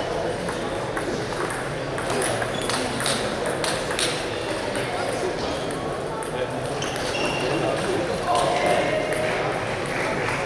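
Celluloid table tennis balls clicking sharply against bats and tables in quick rallies, over a constant background murmur of voices.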